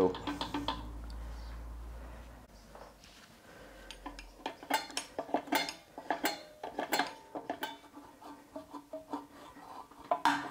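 Screwdriver working the toothed adjuster of a Volvo XC90's rear drum-in-disc parking brake shoes, making a run of sharp, irregular metal clicks and clinks from about five seconds in to about eight seconds in. The adjuster is being wound out to close the couple of millimetres of gap between the shoes and the drum.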